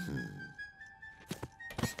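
Cartoon background music with steady held notes, with a few short soft thunks in the second half.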